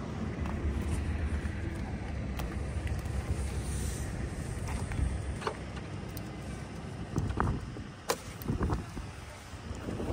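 Steady low wind rumble on the microphone outdoors, with a few sharp clicks and knocks scattered through the second half.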